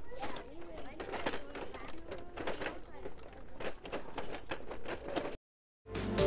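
A group of children chattering as they walk along a concrete path outdoors, with footsteps. The sound cuts off suddenly near the end.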